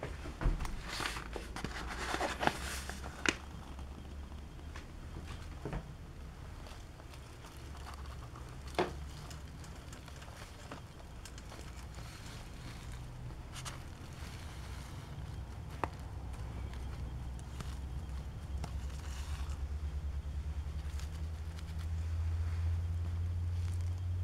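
Scattered clicks and knocks of a metal spoon against a stainless steel mixing bowl, with handling rustles, as flour is spooned in. The clicks are densest in the first few seconds. A steady low hum runs underneath and grows louder near the end.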